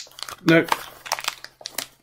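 Crinkling packaging of a sealed emergency escape hood kit, a run of quick crackles as it is tugged at and stays stuck.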